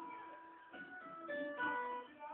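Cavaquinho being plucked: a melody of single notes picked one after another, each ringing briefly before the next.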